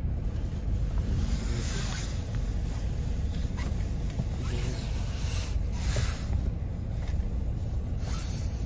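Steady low rumble with a hiss that swells and fades: wind and handling noise on a handheld phone microphone.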